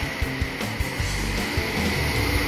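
Background music over the steady rush of wind and engine noise from an NK400 motorcycle cruising on the road.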